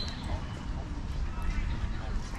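Outdoor park ambience: faint voices of people talking in the distance over a steady low rumble, with a short bird chirp at the very start.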